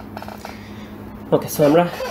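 A few faint, light clicks, followed by a man saying "okay".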